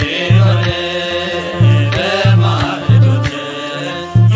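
Ethiopian Orthodox Timket hymn (mezmur): voices singing a slow chant-like line over a deep drum struck in an uneven beat.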